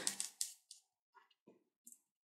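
A few faint, soft scraping dabs of a small paintbrush spreading thick craft mousse over paper, with quiet gaps between them.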